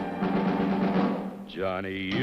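Title theme music for a TV western: a rolling timpani drum roll under the orchestra. About one and a half seconds in, the roll drops away and a pitched note slides up and arcs back down, leading into the theme.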